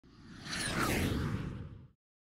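Logo-reveal whoosh sound effect: a rushing sweep with a deep rumble under it that swells over about half a second, carries a falling pitch sweep through the middle, and cuts off abruptly just before the two-second mark.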